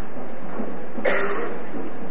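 A single short cough about a second in, over a steady hiss.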